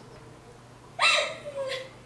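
A girl's acted sob in a dramatic recitation: a loud cry about a second in, falling in pitch, followed by a shorter sob.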